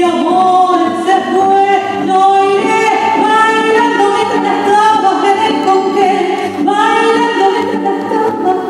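A woman singing a tango live into a microphone over accompaniment, drawing out long held notes.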